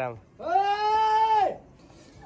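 A man's long, drawn-out shout calling someone by name, held at a steady high pitch for about a second.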